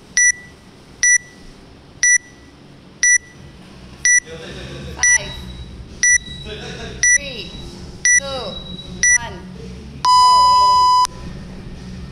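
Workout timer counting down: ten short high beeps about once a second, then one longer, lower beep that signals the start of the workout.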